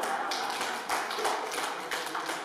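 A room of people laughing in reaction, with a few sharp irregular claps or taps, about two a second.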